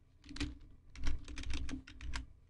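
Typing on a computer keyboard: a couple of separate keystrokes, then a quicker run of several in the second half.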